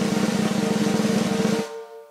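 Drum roll building suspense before a winner is announced. It is a rapid, steady run of strokes that stops about a second and a half in, leaving a short ringing tone.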